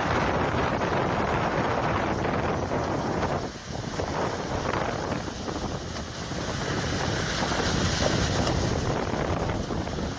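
Strong wind blowing over the microphone, with wind-driven ice sheets grinding and cracking as they are pushed up over a retaining wall.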